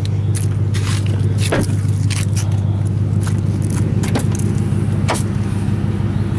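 A car engine idling steadily with a low, even hum. A handful of sharp clicks and knocks sound over it, about a second apart at first and then sparser, as the car's door and rear hatch are handled.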